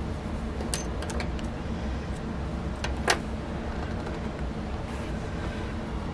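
Steady background hum with light handling noise from hands moving a stuffed crocheted piece, including a few soft clicks about a second in and one sharper click about three seconds in.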